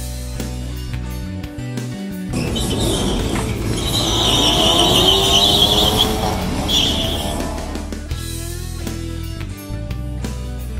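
Background music, then about two seconds in two cars launch off a drag-strip start line: a red Hyundai Coupe and a Ford Focus, their engines revving with rising pitch and tyres squealing from wheelspin through the middle. The engines fade away and the music returns near the end.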